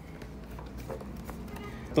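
Faint handling of a paper instruction sheet in a cardboard game box: soft rustling with a few light clicks and taps, over a low steady room hum.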